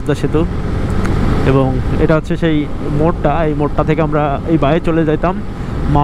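A man talking over the steady low rumble of a moving motorcycle.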